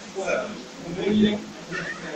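A person talking on a radio broadcast, with one drawn-out sound held for about half a second a little after a second in.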